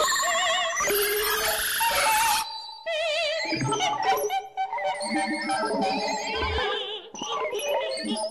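1960s electronic tape music: a mezzo-soprano's sung voice with wide vibrato, layered and manipulated on tape alongside Buchla synthesizer sounds. A dense, noisy layer fills the first couple of seconds and cuts off sharply. After about three seconds it gives way to choppy, spliced fragments of wavering pitched tones.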